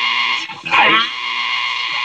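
Zenith Trans-Oceanic H500 tube shortwave radio being tuned between stations: hiss with steady whistling tones from its speaker, and about half a second in a brief warbling squeal falling in pitch as the dial sweeps across a signal.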